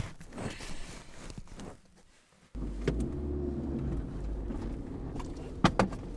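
Car engine idling, heard from inside the cabin as a steady low hum that starts about two and a half seconds in, with a few sharp clicks near the end. Before it comes a stretch of scattered knocks and rustling.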